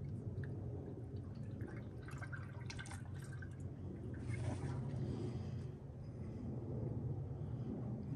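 Automatic transmission fluid poured from a plastic jug into a funnel in an engine's oil filler, a faint steady trickle of liquid over a low hum.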